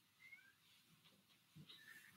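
Near silence, with a few faint, short rising chirps about a quarter second in and again near the end.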